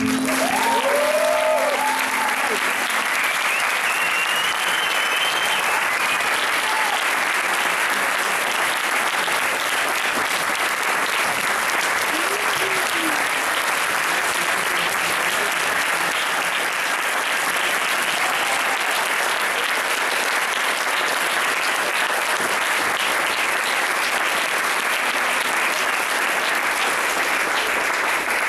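Concert audience applauding steadily as the band's last song ends, with a few cheers in the first seconds.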